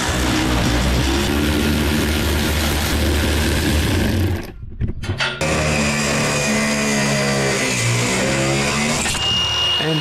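Cordless angle grinder cutting through the steel of a scissor lift, in two long passes with a short break about four and a half seconds in. Near the end the cutting stops, and the motor's whine holds and then falls as the disc spins down.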